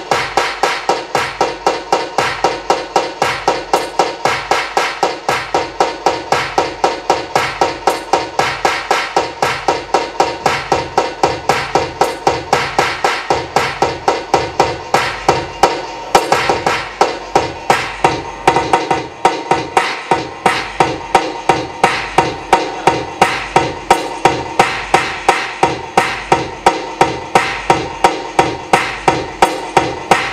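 Live electronic music: a fast, even, hammering pulse of about three to four hits a second over a steady droning tone.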